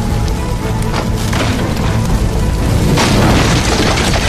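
Film-score music over the sound of a burning wooden interior: a steady low rumble of fire with sharp cracks of splintering wood, and a loud burst of noise about three seconds in.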